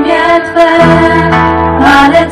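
Live band playing through a PA system: several female voices singing together over acoustic guitar.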